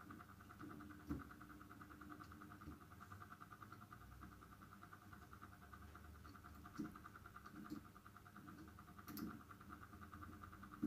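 Near silence: a faint steady hum with a few faint clicks and taps of a small allen key working the grub screws on a cryoscope's metal probe head.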